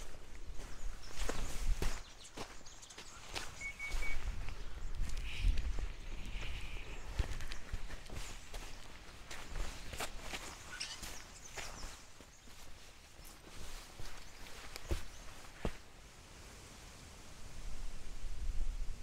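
Footsteps of a hiker walking on a sandy, gritty bush track, irregular steps with low thuds of the footfalls.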